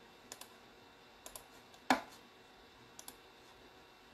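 Faint clicks and taps, mostly in pairs, with one louder knock about two seconds in: a device being worked to start a song playing.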